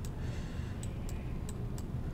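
Low, steady room hum with four faint, light clicks in the second half, from a computer mouse being used to drag a slider on screen.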